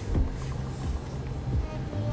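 Quiet background music with low, held bass notes that change pitch, over the low hum of a car driving.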